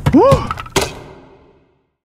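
A sharp thud, then a short cry that rises and falls in pitch, then a last hard hit that dies away to silence after about a second and a half.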